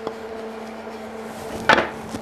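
Wooden boards knocked down onto a wooden workbench, one loud clatter about three-quarters of the way in, over a steady low hum.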